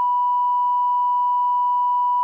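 Steady electronic line-up tone, one pure unchanging pitch, from a broadcast audio feed's test loop that alternates the tone with a synthetic voice ident naming the room's sound channel. It is the signal sent on the feed while nobody is speaking into it.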